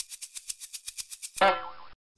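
Cartoon sound effects: a fast, even ticking, about ten ticks a second, then a loud springy boing about a second and a half in that wobbles down in pitch and cuts off sharply.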